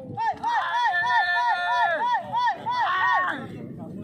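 Men shouting a rapid run of short "hey!" calls, about three a second, the calls used at a sprint pigeon race to draw the racing pigeon down to its mate; the calls fade out near the end.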